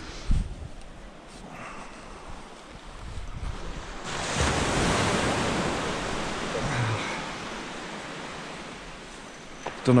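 Surf breaking on a sandy beach: after a few seconds of soft background wash, a wave comes in and rushes up about four seconds in, then slowly fades away.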